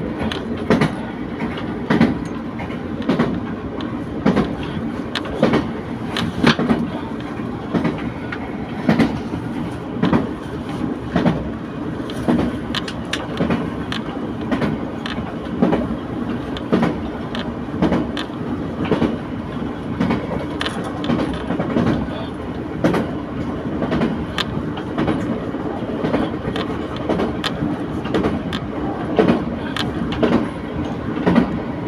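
A diesel railcar running at speed, heard from inside: a steady rumble with the wheels clicking over rail joints about once or twice a second.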